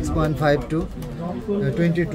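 A person talking in a steady run of speech; no other sound stands out.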